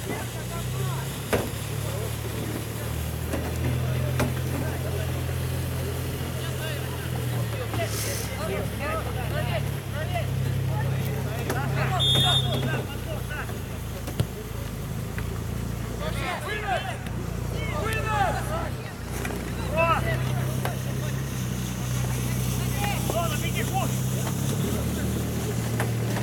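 Distant shouts and calls of youth footballers on the pitch over a steady low rumble, with a short high whistle blast about twelve seconds in.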